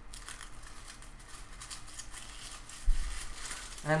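A sheet of coffee-stained, dried paper being crumpled into a ball by hand: a run of irregular crinkles and crackles, with one low thump about three seconds in.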